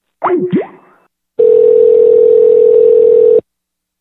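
A steady, single-pitched telephone line tone sounds for about two seconds, after a brief swooping sound at the start. It follows the called party hanging up the line.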